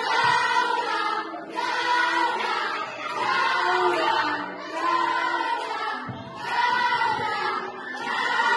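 A group of children singing together, in short phrases that swell and dip about every one and a half seconds.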